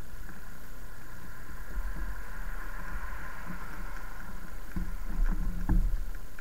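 Rolling noise of an e-bike picked up by a bike-mounted camera: a steady low rumble with a faint hum that swells in the middle, then a few short knocks and rattles near the end.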